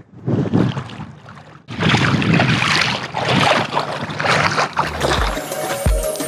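Water sloshing and splashing around a camera held at the surface while wading in shallow sea. Near the end, music with a steady beat comes in.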